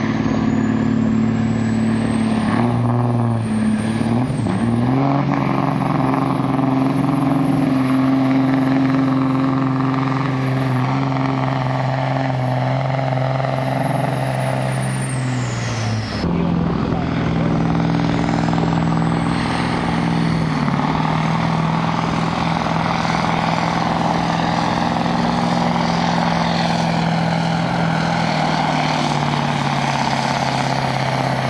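Semi truck's diesel engine working hard under load while pulling a sled, with a high turbo whistle climbing and holding. About halfway through the engine suddenly lets off and the whistle falls away, then the engine and whistle build up again.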